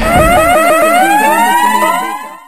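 Electronic siren-like sound effect: quick repeated rising chirps, about six a second, giving way to one longer rising sweep that levels off, beginning to fade near the end.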